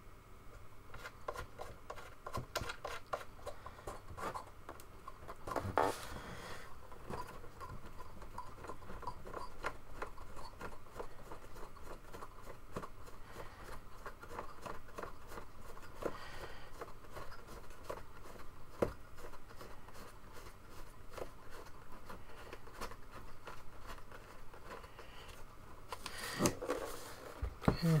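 Small, irregular clicks and scrapes of fingers turning a plastic tilt-adjustment screw into the underside of a plastic portable LED projector, with a couple of louder handling knocks, the last as the projector is turned over near the end.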